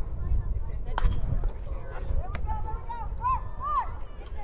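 A sharp crack of a bat hitting a baseball about a second in, followed by spectators shouting and cheering with rising-and-falling calls.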